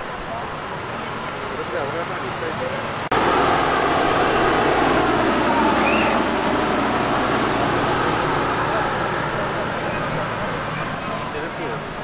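Motor vehicles running on a flooded road, with people's voices mixed in. The sound steps up suddenly about three seconds in and eases off near the end.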